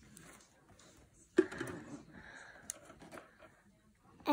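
Faint handling noise from trimming fabric with scissors: a sudden knock about a second and a half in, then two short snips later on.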